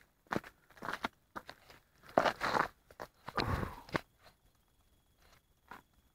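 Footsteps crunching in snow, irregular steps, with two longer, louder crunches in the middle.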